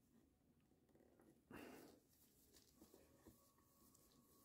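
Near silence, with faint handling sounds of a small Phillips screwdriver being worked in a plastic enclosure's screws and one brief scrape or rustle about one and a half seconds in.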